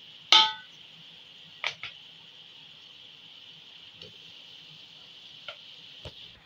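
A steel spoon clinking against an aluminium cooking pot while boiled rice is tipped in. There is one sharp ringing clink about a third of a second in, two lighter knocks near two seconds, and a few faint taps later, over a steady faint high hiss.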